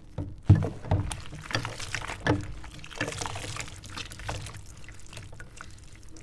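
Hands sloshing and swishing through soapy dishwater in a sink, with a few sharp knocks in the first couple of seconds, then quieter splashing and small clicks.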